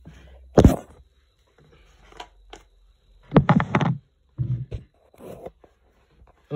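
A plastic tarantula enclosure tub and its snap-on lid being handled and opened: a sharp knock about half a second in, then a run of clicks and plastic creaks.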